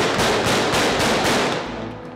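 A rapid string of handgun shots, about seven in a second and a half, running into one another and then fading out near the end.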